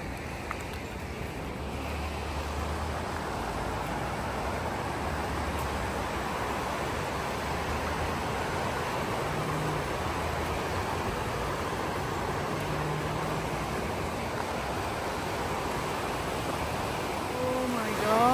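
Fast-flowing mountain river rushing over rocks: a steady, even wash of water noise that grows a little louder about two seconds in and then holds.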